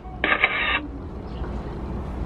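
A photo booth's camera-shutter sound effect played through its small speaker: one tinny burst about half a second long, starting a moment in, marking the picture being taken.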